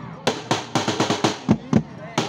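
Drums on a wheeled cart struck with sticks in a fast, even beat of about four strikes a second, some hits with a heavier low thud, as part of a team cheer, with voices shouting along.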